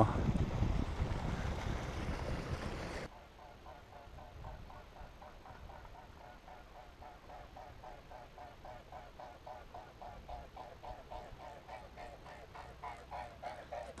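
Wind and water rushing aboard a small sailboat for about three seconds, cutting off suddenly. After that comes a much quieter stretch with a faint, fast, even pulsing, about five pulses a second.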